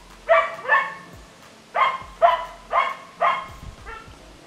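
Dog barking: six short, sharp barks coming in pairs.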